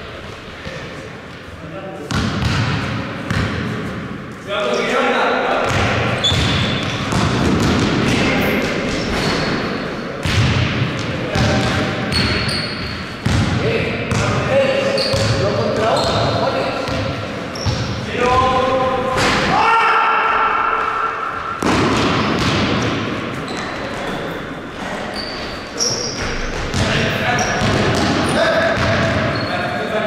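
Basketball being dribbled and bouncing on a sports-hall floor during a half-court game, with players' voices calling out over the play.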